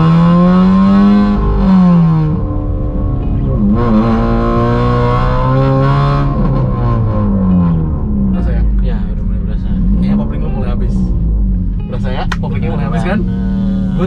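A manual car's engine accelerating through the gears, heard from inside the cabin. The revs rise steadily and drop back at each shift, about two seconds in and again around six seconds. The clutch is nearly worn out and still catches late in first gear, in the occupants' view.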